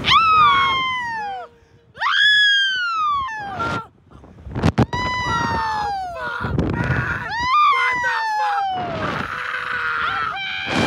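Two women screaming on a slingshot ride, about four long screams that each fall in pitch, with short breaks between them. A few sharp clicks come midway.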